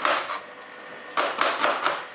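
A kitchen knife slicing a red onion on a plastic cutting board: a quick run of knife strokes hitting the board, starting about a second in.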